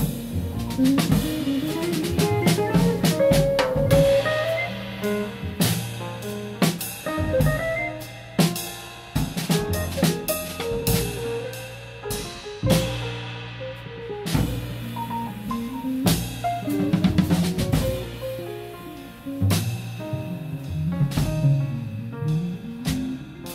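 Live jazz quartet of electric guitar, double bass, piano and drum kit playing, with the drum kit to the fore: snare, bass drum and cymbal strikes over moving bass and piano lines.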